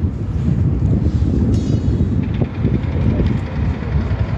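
Wind buffeting the camera microphone: a loud, gusty low rumble.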